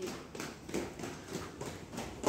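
Footsteps going down a flight of stairs, quick even steps at about three a second.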